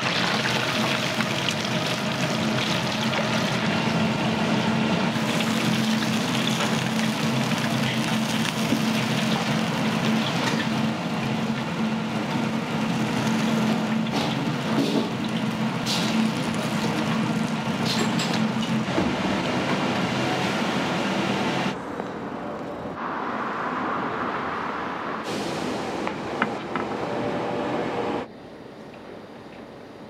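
Chicken pieces deep-frying in hot oil in a wok, sizzling hard, over a steady low hum. About 22 seconds in, the sizzling cuts off abruptly and quieter kitchen noise follows.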